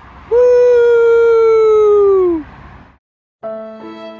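A long held, howl-like note that holds its pitch for about two seconds, then sags and fades. After a moment of silence, slow, sad violin music begins near the end.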